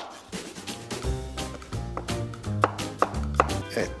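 Background music with a steady low accompaniment, over a chef's knife chopping potato into cubes on a wooden cutting board in a series of irregular strikes.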